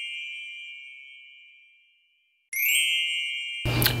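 A high, bell-like chime rings and fades away to silence by about halfway, then a second chime sounds just past halfway and is cut off about a second later.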